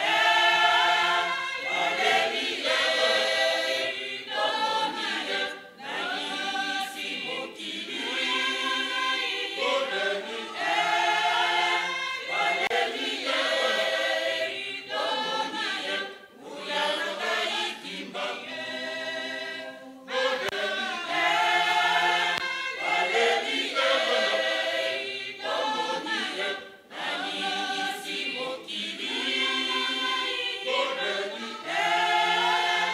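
Mixed choir of men's and women's voices singing a hymn a cappella, in phrases with short breaks between them.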